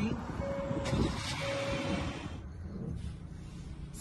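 2024 Hyundai Tucson idling, a low steady rumble, with a brief hiss about a second in and a faint steady tone that sounds twice in the first two seconds.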